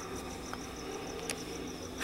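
Crickets chirping in a steady high pulsing, about seven pulses a second, over a faint low hum, with one faint click past the middle.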